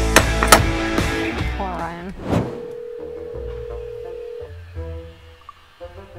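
Two sharp metal clanks in quick succession as the rear door latch handle of a box truck is swung shut. Background music with a steady low beat follows.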